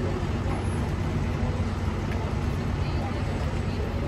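Steady low rumble of road traffic, with people talking nearby.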